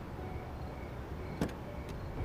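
Two sharp clicks about a second and a half and two seconds in, the car door being unlatched and opened, over a low steady rumble.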